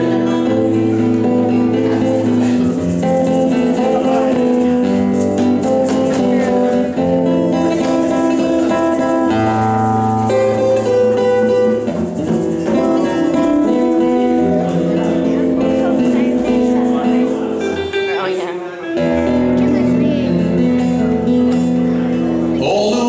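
A live band plays a song with several strummed acoustic and electric guitars, bass and hand drums, with voices singing along. There is a short lull about three seconds before the end.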